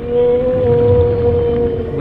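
Killer whale call heard underwater: one long, steady tone over a low rumble of water.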